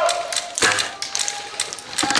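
A run of sharp taps and clicks from airsoft fire, with one louder knock about half a second in.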